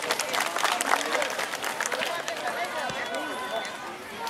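A crowd applauding, the clapping thinning out after about two seconds, with voices of the crowd underneath.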